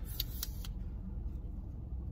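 A few light clicks and taps of small objects being handled in the first moments, over a low steady rumble.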